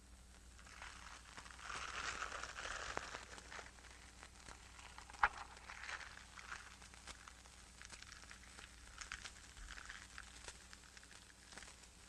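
Faint rustling with scattered light clicks, swelling about one and a half to three and a half seconds in, and one sharper click about five seconds in.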